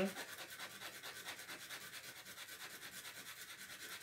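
A lithium tablet rubbed back and forth on sandpaper, a faint, quick rasping of about six strokes a second, grinding the tablet down to reduce its weight and so the dose.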